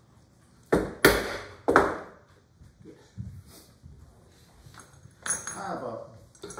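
Wooden mallet striking the steel bench holdfasts to set them against the board: three sharp knocks with a short metallic ring, close together in the first two seconds.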